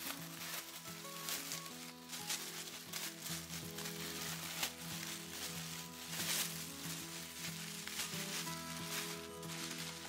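Bubble wrap and thin plastic packaging crinkling and crackling in irregular bursts as a small wrapped item is unwrapped by hand, over soft background music with steady held notes.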